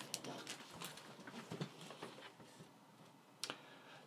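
Faint handling noise: small clicks and rustles of hands working with the FPV goggles, then a short stretch of near silence and one sharper click about three and a half seconds in.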